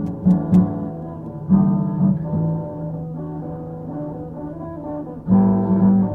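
Rock band instrumental: guitars holding sustained chords, with new chords struck about a second and a half in and again near the end.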